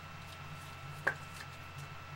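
A steady low electrical hum with a faint high whine, broken by one short, sharp click about a second in and a fainter tick just after.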